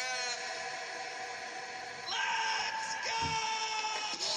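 A man's voice holding long yelled notes in a song, with music beneath: one note held for about two seconds, then a higher one about two seconds in.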